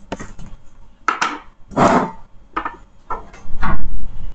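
Workbench handling noises while soldering gear is picked up and used: about five irregular scraping and knocking sounds, the loudest near the end.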